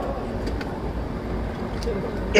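A pause in an amplified speech at a large outdoor gathering: a steady low rumble under a faint background hum of the crowd and sound system, with a couple of small ticks.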